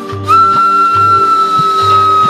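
Ney (end-blown cane flute) playing one long held note, entering after a brief pause at the start, its pitch sagging slightly as it is held. A low pulse repeats underneath about every half second.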